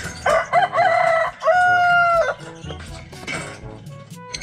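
A rooster crows once, a call of about two seconds: a wavering first part, a brief break, then a long held note that drops off at the end.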